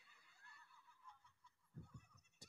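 Near silence: faint room tone with a few faint, short, wavering high sounds, and a brief soft low sound near the end.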